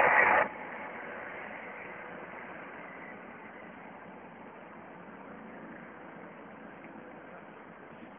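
Steady outdoor background noise, faint and slowly fading, after a loud burst of noise that cuts off about half a second in.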